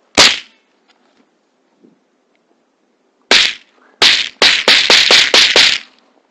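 Shotgun shots, very loud and close: one sharp shot just as it begins, another about three seconds later, then a rapid string of about eight shots in under two seconds.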